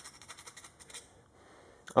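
Round chainsaw file rasping in quick short strokes inside a hole in a plastic project box, deburring and enlarging it; the strokes stop about a second in.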